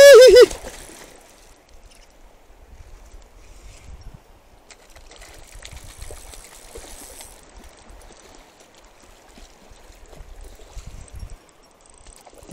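A man's short, loud shout at the very start. Then the quieter running of a shallow river, with a hooked fish splashing at the surface, most around five to seven seconds in.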